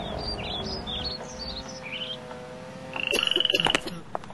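Birdsong: a run of short, falling chirps, then a loud fast trill about three seconds in.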